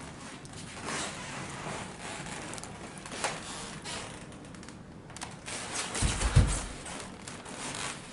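Soft rustling and scraping sounds, with a short dull low thump about six seconds in.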